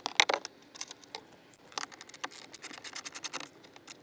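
Irregular light clicks and scrapes of a T-handle driver backing out 7 mm screws from the plastic dashboard panel.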